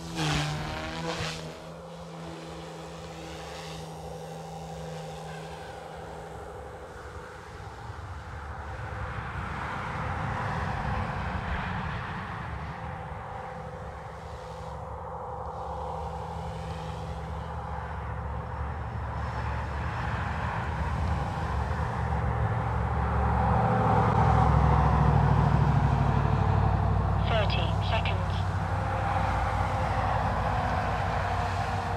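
OMPHOBBY M2 V2 micro electric RC helicopter in flight, its rotors and motors whirring steadily, swelling and fading as it manoeuvres and loudest about three-quarters of the way through. The tail motor has been reversed to make the tail quieter.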